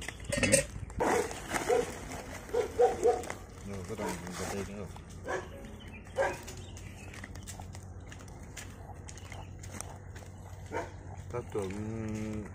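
Short animal cries in quick series, several close together in the first three seconds and a few more over the next few seconds, then a quieter stretch.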